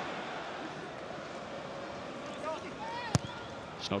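Football stadium crowd noise, a steady murmur with a few individual shouts from the stands. About three seconds in comes a single sharp thud of the ball being struck for a cross.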